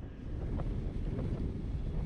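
Wind rumbling on the microphone of a camera riding on a moving bicycle, a steady low noise with no distinct events.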